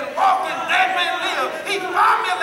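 A man preaching in a loud, shouted, half-sung voice, the pitch sliding up and down from phrase to phrase.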